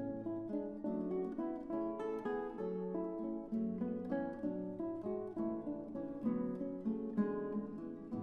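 Background music: acoustic guitar playing a steady run of plucked notes.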